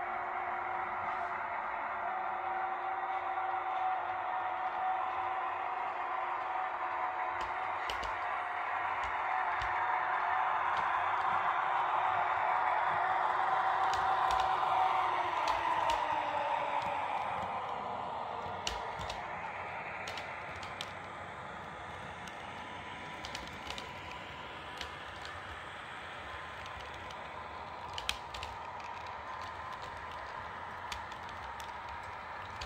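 H0-scale model electric locomotive (an EU07 model) running on the track: its motor whines steadily, growing louder, then drops in pitch and volume past the midpoint as the train slows. Scattered sharp clicks from the wheels on the rails are heard throughout.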